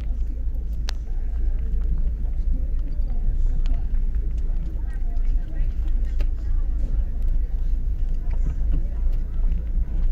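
Steady low rumble of a car creeping along at walking pace, with indistinct voices of people in the street around it.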